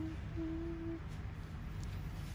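A person humming: a brief held note, then a longer note at the same pitch lasting about half a second, stopping about a second in. A low steady background hum runs underneath.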